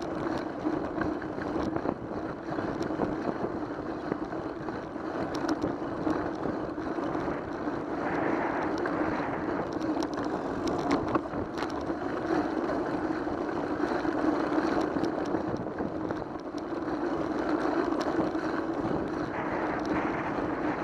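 Bicycle rolling along smooth asphalt, with a steady rush of wind on the bike camera's microphone, a steady hum and a few small clicks and rattles.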